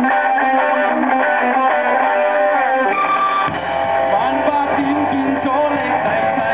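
A live rock band playing, with electric guitar to the fore. Deeper bass notes join about halfway through.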